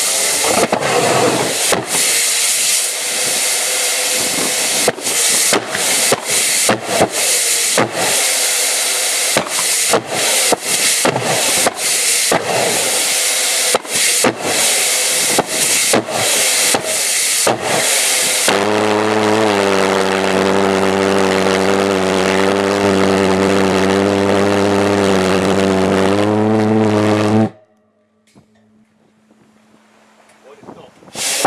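Jet go-kart's pulsejet engine running with a loud, ragged roar broken by many brief drop-outs. About two-thirds of the way through it settles into a steady low buzzing drone. It stops abruptly near the end, leaving only a faint hum.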